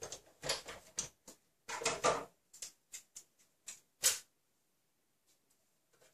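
A string of short clicks, knocks and paper rustles as craft materials are handled, the loudest knock about four seconds in.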